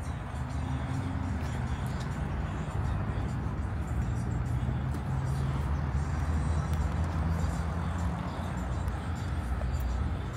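City traffic noise: a steady low rumble of vehicle engines and tyres.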